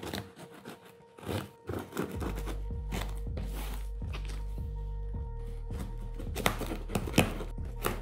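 Background music with a steady low bass comes in about two seconds in. Under it, a serrated knife scrapes and saws through packing tape on a cardboard box, with short scrapes and knocks, several close together near the end.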